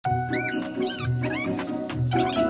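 Background music with a steady low beat. About three short squeaky chirps that rise and fall in pitch come in over it during the first second and a half.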